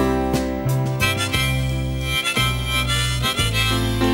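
Harmonica in a neck rack playing a melodic instrumental break over piano and band accompaniment, coming in about a second in.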